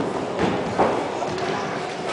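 Two thumps about a third of a second apart, the second louder, from gymnasts' impacts on the competition mats. Voices chatter in the hall behind them.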